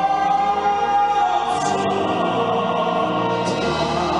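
A male baritone singing a musical-theatre ballad over instrumental accompaniment, holding a long note that ends about a second in.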